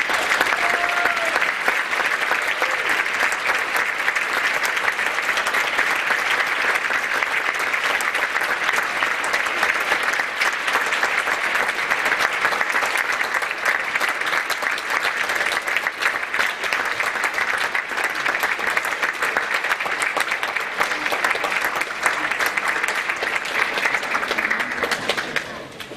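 Audience applauding, beginning abruptly as the music stops and holding steady.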